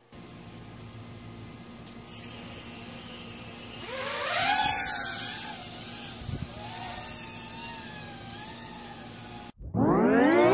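Micro brushless quadcopter with Emax RB1306 4000 kV motors whining in flight, its pitch wavering up and down with throttle; it swells louder about four seconds in, then settles to a steadier hum. A sharp click about two seconds in.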